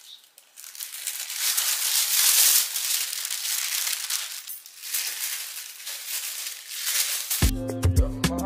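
Sheets of thin white tissue paper rustling and crinkling in waves as they are pulled apart and handled. About seven and a half seconds in, background music with a steady beat starts suddenly.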